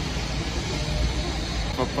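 Steady city street noise: a low rumble of traffic under an even hiss. A man's voice starts near the end.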